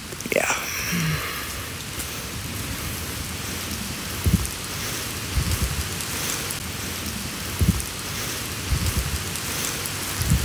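Steady hiss of rain falling on and around a phone microphone. A few low thumps come through it about four, five and a half, seven and a half and nine seconds in.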